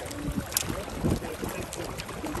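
Water and wind noise around a small boat, with faint voices in the background and a sharp knock about half a second in.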